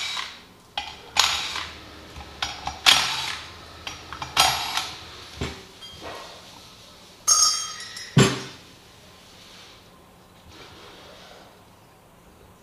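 Metal clutch parts and bolts of a Can-Am Maverick X3 primary clutch clinking and knocking as they are handled and set down on a workbench during disassembly: about a dozen sharp clinks over the first eight seconds, then only quiet handling.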